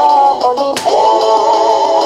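Christian worship song playing, a voice singing a sustained melody over instrumental backing, with one sharp percussive hit a little under a second in.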